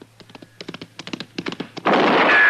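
Radio-drama sound effects: a quick series of knocks and clicks that grows steadily louder, then a sudden loud crash near the end.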